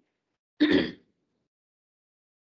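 A person clearing their throat once, briefly, about half a second in.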